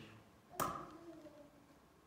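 A single sharp tap about half a second in, followed by a faint brief ringing.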